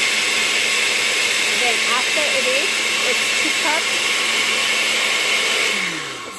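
Oster countertop blender running at a steady speed, puréeing tomato, onion, garlic and chicken bouillon with water into a liquid, with a steady motor whine. It switches off just before the end.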